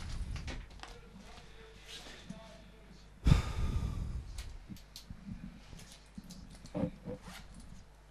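Open microphone with low background noise and a few faint, brief voice sounds, and a sudden breathy rush into the microphone about three seconds in that fades over about a second.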